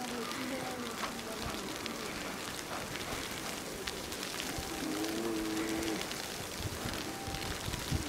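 Indistinct voices of people talking over a steady hiss, with one drawn-out voice sound lasting about a second, about five seconds in.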